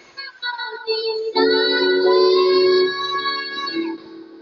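A young girl singing into a handheld microphone, belting a long, loud held note from about a second and a half in that eases off near the end.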